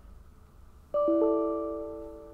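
Computer alert chime about a second in: two bell-like notes a quarter second apart, ringing on and slowly fading. It sounds as the program download to the robot fails because no battery is plugged in.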